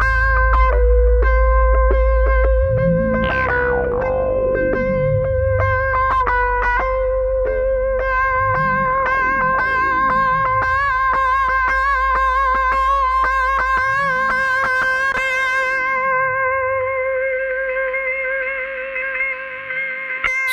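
Instrumental electronic music: a long held, effected electric guitar note rings over deep swooping bass glides and a ticking beat. The bass drops away in the last second or so.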